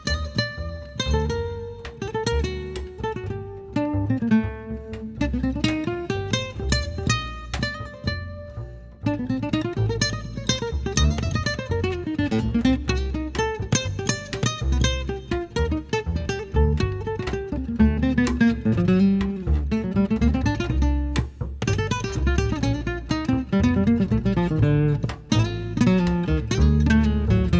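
Acoustic guitar playing an instrumental passage of quick plucked melodic runs that rise and fall, over a plucked upright double bass.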